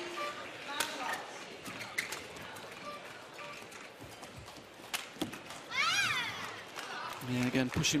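Badminton rally: several sharp racket hits on the shuttlecock, about a second apart, with a shoe squeaking on the court floor about six seconds in.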